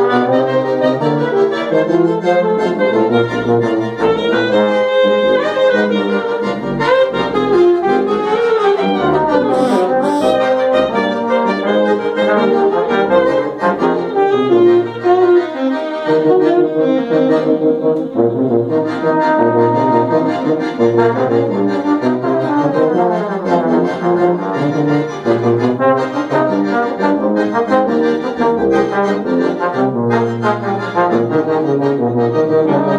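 A quartet of piano accordion, saxophone, trombone and tuba playing an instrumental tune together, with the tuba playing low bass notes beneath the melody.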